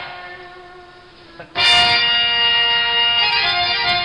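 Harmonium playing held notes: a sustained note fades away over the first second and a half, then a loud, full chord comes in and is held.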